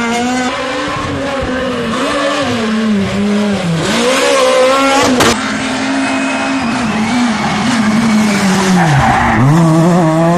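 Super 2000 rally cars' high-revving four-cylinder engines driven hard through corners, the pitch climbing and dropping with gear changes and lifts off the throttle, with deep dips about four and nine seconds in. A single sharp crack about five seconds in.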